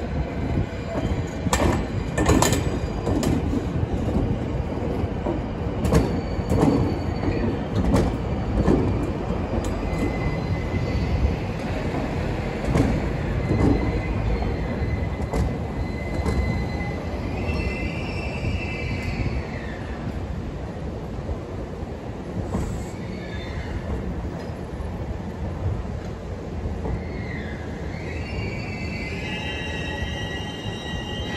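Tokyu 5080 series train cars rolling slowly in reverse during a shunting move. Their wheels knock over rail joints and points in the first several seconds, then squeal in thin, wavering high tones, with a few squeals bending up and down near the end.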